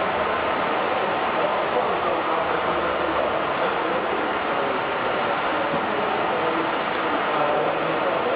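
Steady mechanical din from a label die-cutting and rewinding machine in its production hall: an even, unbroken noise with no distinct strokes or clicks.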